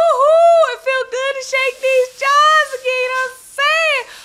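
A woman singing a short cheer-style victory chant in a high voice, a run of short syllables held mostly on one pitch, ending on a note that rises and falls.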